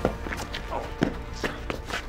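Shoes scuffing and stepping hard on concrete as two men grapple, in a quick series of sharp steps about three a second. A short grunted "Oh" comes just under a second in.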